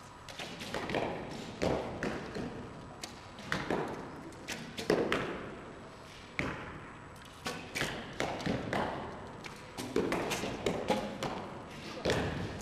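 Recurve bows being shot along the line in a sports hall: a run of sharp, irregular thuds from bowstring releases and arrows striking the targets, each echoing briefly in the hall.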